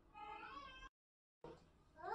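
A faint high-pitched call with bending pitch, lasting under a second. Then the sound cuts out completely for about half a second.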